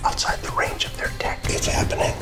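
A man speaking in a low, whispery voice over a low background music bed.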